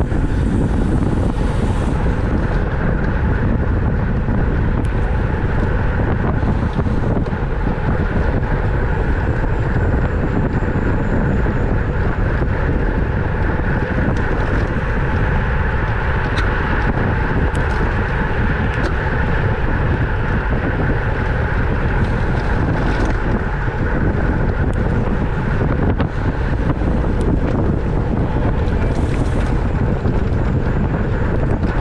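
Steady wind noise on a bicycle-mounted camera's microphone while riding at about 25 mph.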